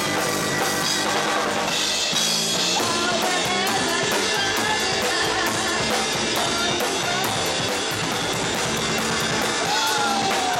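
A rock band playing live, with the drum kit and its cymbals close at hand and electric guitars over a steady beat.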